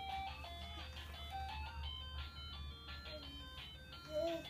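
Electronic toy melody from a baby walker's play tray, a simple beeping tune of short held notes stepping up and down a few times a second.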